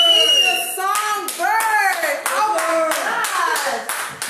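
Hands clapping in an even beat, about three to four claps a second, starting about a second in, with voices calling out over it.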